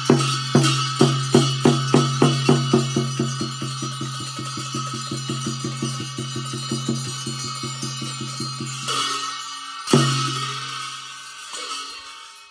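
Tibetan Buddhist ritual frame drum and large hand cymbals struck together in an accelerating roll. The strokes speed up from about three a second to a rapid patter and stop about nine seconds in. A single loud stroke follows about a second later and rings and fades.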